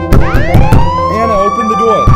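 An emergency-vehicle siren wails, its pitch sweeping up just after the start and then holding high and slowly easing down. Repeated heavy thumps of a fist pounding on a door run through it.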